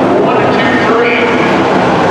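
Several dirt-track hobby stock cars racing together, their V8 engines giving a loud, continuous drone whose pitch rises and falls as the cars pass.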